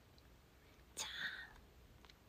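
A woman's short whispered, breathy sound about a second in, lasting about half a second, against otherwise quiet room tone.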